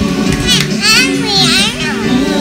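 A small child's high-pitched voice, wavering up and down, from about half a second in to near the end, over a worship song playing from a television.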